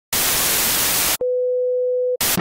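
Television static hiss for about a second, then after a brief break a steady single test-pattern tone.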